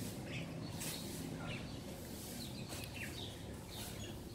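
Faint outdoor ambience with a low steady background hum and several short, high bird chirps scattered through it.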